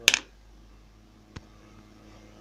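Lead buckshot pellets clicking against each other and a plastic lid: one sharp click just at the start, a faint tick about a second and a half in, over a low steady hum.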